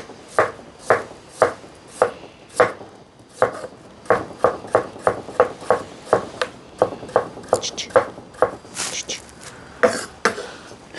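Kitchen knife chopping raw potatoes on a cutting board in steady strokes. The strokes come about two a second at first and quicken to about three a second after about three seconds.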